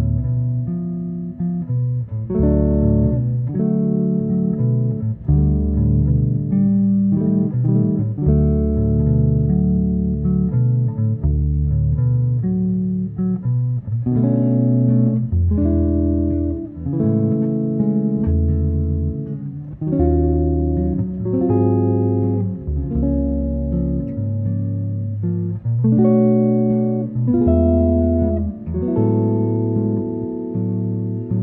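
Jazz guitar recording: guitars playing chords and single-note lines over a bass line, with low bass notes changing about once a second.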